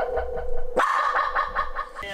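A small mixed-breed dog giving a drawn-out two-part howl: a long lower note, then a higher one held for about a second.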